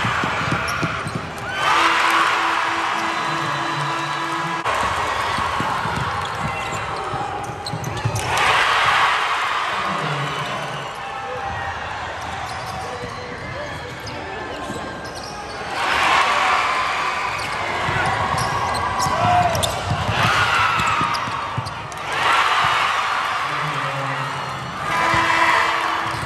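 Basketball game sound in an arena: a crowd cheering and shouting in repeated swells, over a basketball bouncing on the hardwood court.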